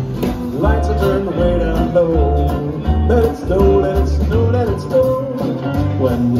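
A small swing/jazz band playing live: a melody line with sliding, bending notes over guitars, upright double bass and drums.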